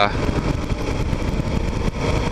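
2009 Kawasaki KLR 650 single-cylinder motorcycle running steadily at road speed, with wind rushing over the microphone.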